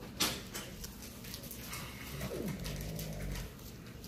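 Medical tape and an IV line being handled and pressed onto the back of a hand: a sharp click near the start, then several lighter clicks and crinkles. A little after two seconds, a short low sound falls in pitch and holds for about a second.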